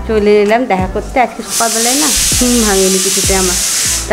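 A loud, steady hiss starts abruptly about one and a half seconds in and holds, over a voice.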